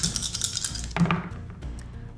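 Dice being rolled: a run of small clicking and clattering with one louder knock about a second in.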